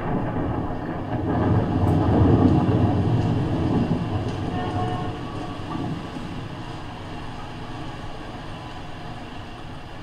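A loud, low mechanical rumble with a faint steady hum in it that builds to a peak about two to three seconds in, then slowly dies away, like something heavy passing by.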